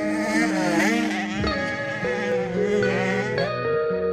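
Background music with sustained, held notes and a wavering, warbling lead line.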